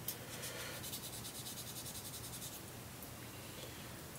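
Faint rustling and light scratching from hands handling small laptop parts on a workbench, dying away after about two and a half seconds.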